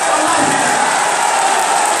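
A crowd of many voices shouting and talking over one another in a large, echoing hall, a loud continuous din.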